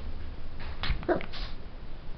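Biewer terrier puppy making a couple of short vocal sounds about a second in.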